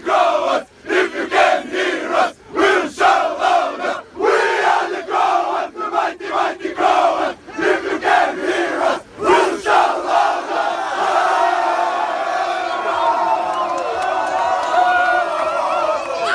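A team of men chanting their football club song in unison, loud rhythmic shouted phrases broken by short pauses; about ten seconds in the chant gives way to sustained cheering and shouting.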